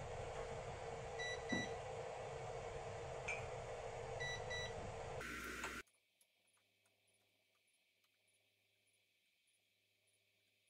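A preheated electric 3D vacuum sublimation heat press humming steadily, with a few short high beeps in pairs and brief handling knocks as its lid is opened. About six seconds in, the sound cuts off suddenly and leaves near silence.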